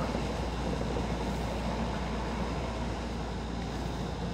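Electric commuter train running, heard from inside the driver's cab: a steady low rumble with an even running noise as it rolls along the station platforms.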